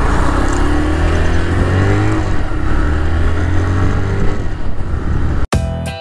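TVS Raider 125 single-cylinder engine pulling away in first gear, its note rising as the bike gathers speed. About five and a half seconds in it cuts off suddenly and background music starts.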